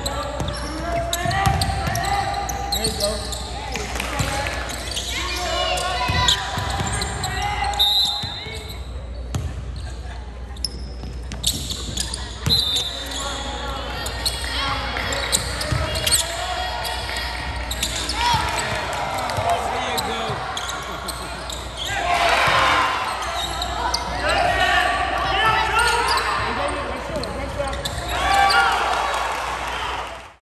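Live sound of a basketball game in a gym hall: players and spectators calling out and talking, mixed with a basketball being dribbled on a hardwood court.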